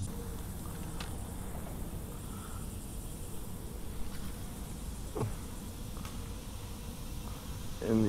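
Outdoor ambience: a faint steady insect buzz over a low, even rumble, with a small click about a second in and a brief faint voice about five seconds in.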